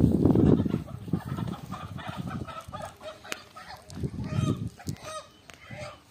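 Domestic fowl clucking and calling in short, broken calls. Louder low rumbling bursts come at the start and again about four seconds in.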